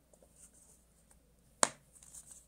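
A single sharp plastic click about a second and a half in, from the LED bulb's frosted diffuser cap being pressed home onto the bulb body by hand. A few faint handling ticks come before it.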